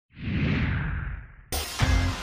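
A whoosh sound effect for a logo intro: it swells in, then sinks in pitch and fades. About one and a half seconds in, music cuts in abruptly, with a deep bass hit near the end.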